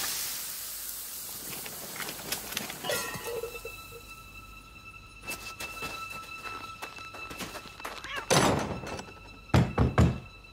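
Film sound effects: scattered thuds and clatter under a faint steady high tone, then a swish and two sharp knocks of a fist on a wooden door near the end.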